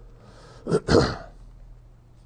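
A man clearing his throat: a breath, then two short rough bursts about a second in.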